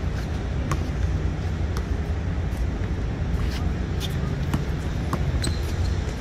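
Basketball bouncing on an outdoor hard court, about eight sharp, irregularly spaced bounces, over a steady low background rumble.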